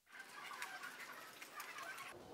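Faint clucking of chickens in the background.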